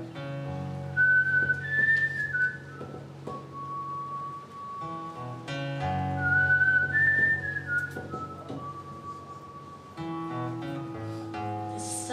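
Instrumental introduction to a folk song: acoustic guitar chords with a whistled melody on top, over a sustained low line. The whistled tune is a short rising-and-falling phrase ending on a long held note, and it comes twice.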